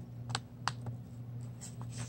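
A few light clicks and taps from a paper envelope being handled in the hands, over a steady low hum.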